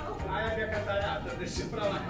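Faint voices of people talking in the background, quieter than the close speech either side.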